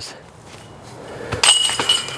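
Disc golf putter striking the hanging metal chains of a disc golf basket about one and a half seconds in. The chains jangle and ring as the disc drops into the basket.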